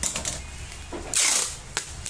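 Bubble wrap crackling under the hands, then a short, loud rip of packing tape pulled off its roll about a second in, with a click near the end.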